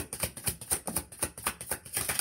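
Tarot cards being shuffled by hand: a quick, uneven run of light card clicks and slaps, several a second.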